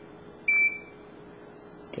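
The external beeper of a Weldon VDR seat belt indicator gives one short, high-pitched electronic beep about half a second in. It is the seat-belt error alarm: a belt was buckled before the seat was occupied, and the park brake was then released.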